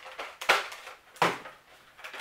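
Hard plastic parts clicking and knocking as an injection-molded front barrel attachment is forced onto a Nerf blaster, with two louder clacks about half a second and a second and a quarter in. The new pieces are a tight fit.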